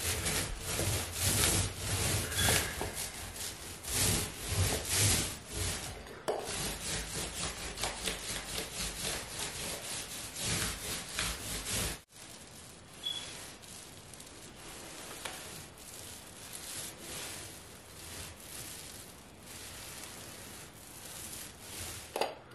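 Paint roller rolling paint onto an OSB wall panel: repeated back-and-forth rubbing strokes. The strokes are louder at first, break off abruptly about halfway through, and carry on more quietly after that.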